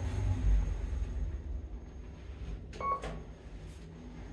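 KONE MonoSpace DX lift car slowing to a stop at a floor, its low ride rumble fading away. About three seconds in comes one short electronic beep, with a faint click just before and another just after.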